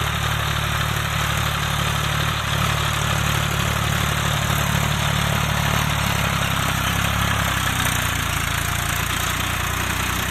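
Red farm tractor's diesel engine running steadily under load as it pulls a harrow through tilled soil; its note shifts a little about six or seven seconds in.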